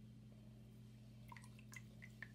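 Near silence over a low steady hum, with a few faint drips of water falling from wet doll hair into the filled sink in the second half.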